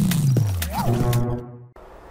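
News-channel intro music stinger with a deep sound effect whose pitch falls steadily over the first second, layered with sustained tones and a few sharp hits, fading out about a second and a half in.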